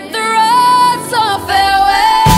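Female pop vocal singing two long held notes over sparse backing, with the bass and drums dropped out. The song is leading into its chorus.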